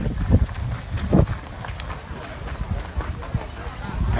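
Wind buffeting the microphone as a steady low rumble, with footsteps on a gravel path and scattered crowd voices, one short voice about a second in.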